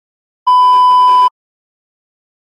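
A single loud, steady electronic beep lasting just under a second, switching on and off abruptly: an edited-in bleep sound effect.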